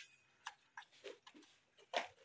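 A cat eating dry kibble from a plastic bowl: faint, short, irregular crunching clicks, a few a second.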